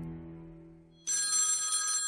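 A steady low musical drone fades away; then, about a second in, a telephone bell rings with one sudden metallic burst of about a second, its tone hanging on as it dies away.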